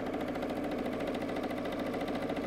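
Electric sewing machine running steadily, stitching a seam through cotton fabric strips, with a fast, even needle rhythm over its motor hum.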